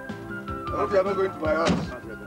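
Background film music with steady held tones under brief voice exclamations, and a single car-door thunk near the end as the door is shut.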